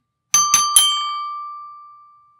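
A metal plate of a Fisher-Price alligator toy xylophone is struck three times in quick succession with a plastic mallet. The bell-like tone then keeps ringing and fades slowly, showing the plate's long sustain.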